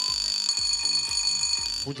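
Electronic quiz-game buzzer signalling that a team has buzzed in to answer: a steady, high-pitched electronic tone that cuts off suddenly shortly before the end.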